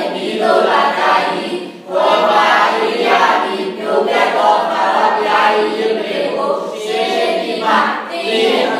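A congregation singing together, many voices in one continuous phrase with a brief break for breath about two seconds in.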